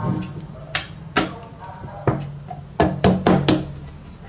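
Plastic scoop knocking and scraping against the rim of a tin of powdered milk formula while powder is scooped out: about seven sharp knocks, the last four in quick succession near the end.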